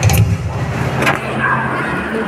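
Handling noise from a phone being moved while it records: a deep rumble with two sharp knocks, one at the start and one about a second in.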